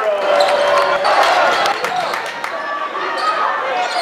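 Basketball bouncing on a hardwood gym floor during play, with repeated sharp impacts, amid voices and shouts from the crowd and players.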